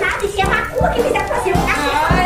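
High-pitched, childlike voices over music with a steady beat.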